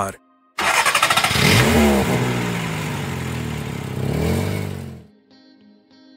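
Car engine sound effect: it starts with a quick rattling burst, revs up, runs steadily and fades away about five seconds in, as a car driving off.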